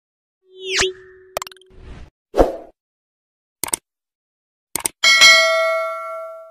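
Stock sound effects of a YouTube subscribe-button animation: a swooping effect and a few pops, then quick double clicks, and near the end a bright bell ding that rings on.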